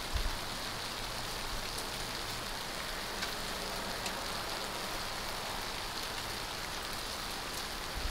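Ice-glazed tree branches and twigs ticking and rattling together in the wind, a steady patter that sounds like it's raining.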